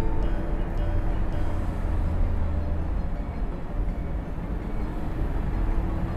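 Steady low rumble of a car's engine and tyres heard from inside the cabin while cruising on a smooth asphalt road, with faint music underneath.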